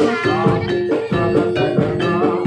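Gamelan-style music for a jaran kepang dance: repeated pitched metallophone notes in a steady pattern over drum beats, with a wavering melody line on top.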